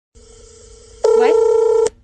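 Phone video-call tone: a faint steady tone, then about a second in a much louder, fuller tone that cuts off suddenly just before the end.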